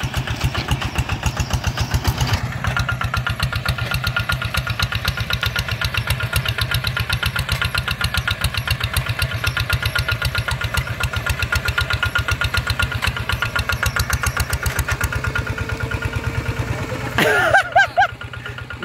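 The single-cylinder diesel engine of a two-wheel hand tractor runs steadily under load with an even, rapid chugging firing beat while it ploughs the field. Near the end there is a brief, louder, uneven burst of sound.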